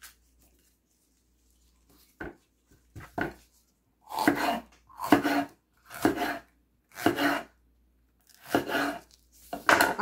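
Kitchen knife slicing a red bell pepper on a wooden cutting board: a quiet start with a couple of light knocks, then cut after cut about once a second through the second half.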